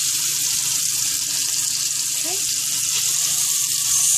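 Skirt steak pinwheels searing in hot butter in a frying pan: a steady sizzle as the meat is pressed down against the pan.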